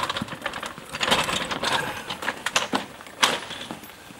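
Metal wheeled stretcher trolley rattling and clattering as it is pushed over paving, a run of irregular clicks and knocks with a sharp knock a little after three seconds in.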